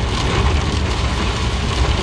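Heavy rain drumming on a car's roof and windscreen, heard from inside the cabin over a steady low rumble of the moving car.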